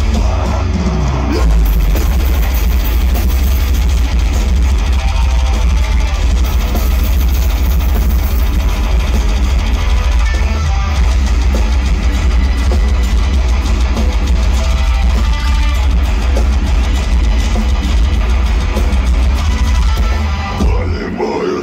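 A deathcore band playing live on an open-air festival stage, heard from within the crowd: distorted guitars and drums, loud and dense, with a heavy booming bass.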